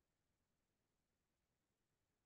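Near silence: the muted call audio carries only a faint, even hiss.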